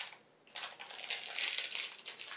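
Plastic snack bag being torn and pulled open, with a crackling crinkle of the film that starts about half a second in and carries on.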